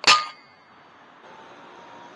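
A single shot from a .22 FX Impact M3 PCP air rifle: a sharp crack at the start with a metallic ring that dies away within about half a second.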